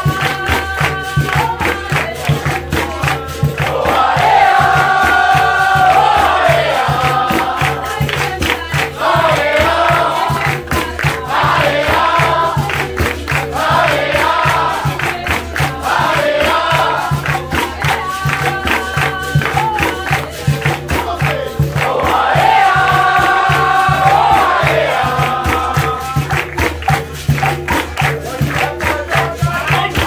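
Capoeira roda music: berimbaus, an atabaque drum and pandeiros play a steady rhythm while a circle of people sing and clap along. Group singing swells louder a few seconds in and again later, between stretches of lighter singing.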